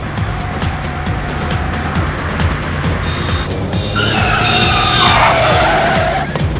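Car engines revving and tyres squealing as cars are thrown around a roundabout in a chase, over dramatic music with a steady beat. The tyre squeal grows loudest about four seconds in, a wavering high screech.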